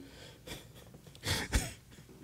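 One short, breathy huff of breath from a person about a second and a half in, over quiet room noise.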